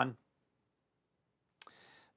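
The last of a man's spoken word, then near silence; near the end a single faint computer-mouse click, as a PDF page is turned, followed by a short breath.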